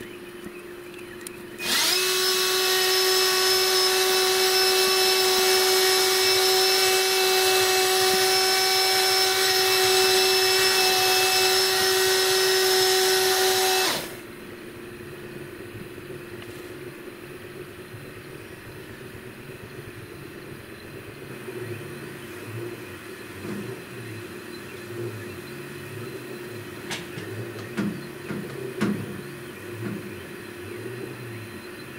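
A loud, steady motor whine of constant pitch starts about two seconds in and cuts off suddenly after about twelve seconds. After it, the CNC flat coil winder's stepper motors hum quietly, their pitch wavering, as the tool head lays fine wire in a circle, with a few light clicks near the end.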